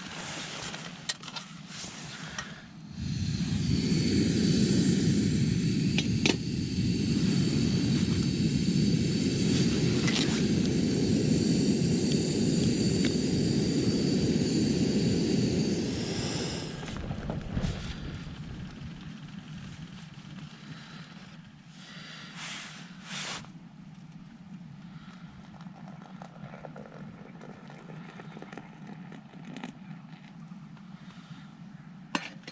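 Gas camping stove lit about three seconds in, its burner running with a steady rushing hiss and a faint high tone. The hiss fades out a little past the middle, leaving a few light knocks.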